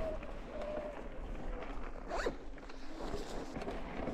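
Mountain bike's freewheel hub ticking rapidly as the bike rolls along a dirt trail, with a brief rising-and-falling squeak about two seconds in.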